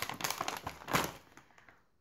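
Rustling and light tapping of packaged goods being handled in a cardboard shipping box, a few quick crinkly strokes in the first second and a half.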